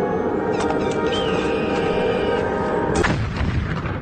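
Music layered with war sound effects of artillery fire, with a heavy boom about three seconds in.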